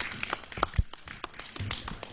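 A small audience clapping, a thin round of applause breaking into scattered separate claps.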